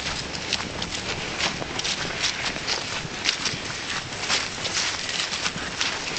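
Brisk footsteps crunching through grass and dry fallen leaves, crisp irregular steps about two to three a second at a fast walking pace.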